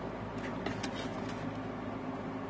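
Steady low background hum with a few faint light ticks as small cardboard and plastic craft pieces are handled.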